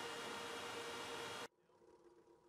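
Steady hiss with a few faint steady hum tones in it, cut off abruptly about one and a half seconds in, leaving a much quieter faint hum.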